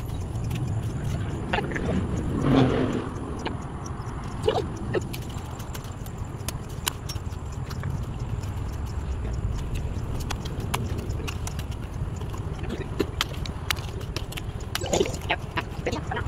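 A metal garden hoe chopping and scraping into soil and stones in scattered sharp strikes, over a steady low rumble, with a louder scrape about two and a half seconds in.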